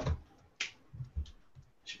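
A handful of short clicks and soft knocks, the loudest right at the start and a sharper click about half a second in: small handling noises at a desk.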